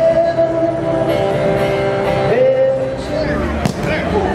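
Background music: a song with guitar and a voice holding long notes.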